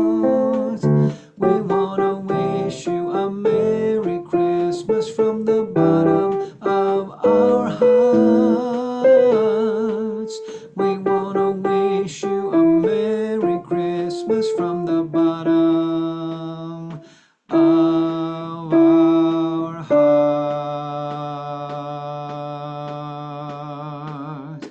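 A voice singing a choral part of a Christmas song with instrumental accompaniment, the notes changing every half second or so, some with vibrato. After a brief break, it ends on a long held chord that slowly fades.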